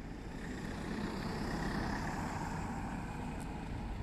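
Road traffic: a car going by on the road, its tyre and engine noise swelling through the middle and easing again.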